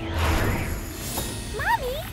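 Cartoon whoosh sound effect with a low rumble over sustained music at a scene transition. Near the end, a character's voice slides up and down in a surprised exclamation.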